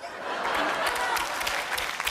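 Studio audience applauding, the clapping building within about half a second and holding steady.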